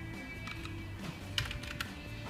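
A few clicks of computer keyboard keys in the second half, typing a command, over a song playing quietly through a wired speaker fed by the TI TLV320AIC33 codec board.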